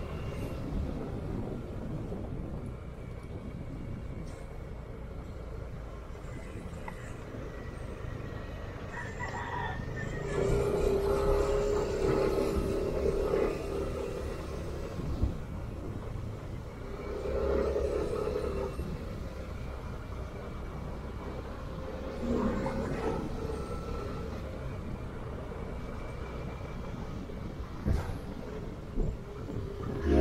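Yamaha Aerox scooter riding along at low speed, its single-cylinder engine and the wind on the microphone making a steady low rumble. The engine note grows louder and steadier for a few seconds about ten seconds in and again briefly around seventeen seconds, and a few short knocks come near the end.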